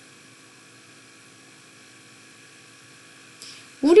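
Faint, steady electrical hum with a light hiss from the recording chain, holding a few thin steady tones; a brief soft noise comes just before speech resumes near the end.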